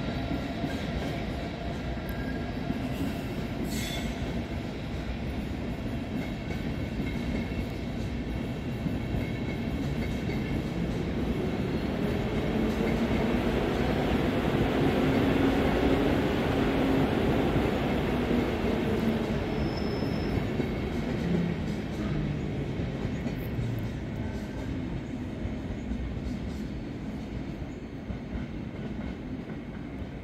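An Intercity train of passenger coaches rolling out of the station past the listener, its wheels on the rails swelling to their loudest about halfway through and then fading away. A short, high wheel squeal comes about two-thirds of the way in.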